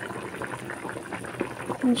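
Chicken soup broth boiling in a pan: a steady run of many small, irregular bubbling pops. A voice starts a word right at the end.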